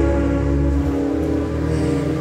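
Instrumental backing track of a pop ballad playing between sung lines: held chords over a steady bass.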